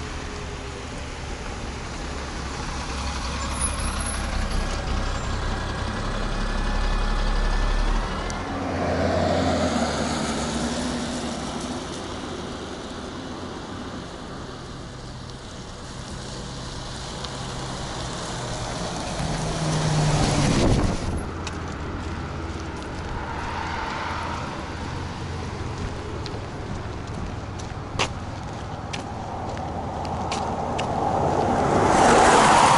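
A bus and cars passing on a wet road: engine rumble and tyre noise swell and fade as each vehicle goes by. A sharp, loud hiss about twenty seconds in fits the bus's air brakes.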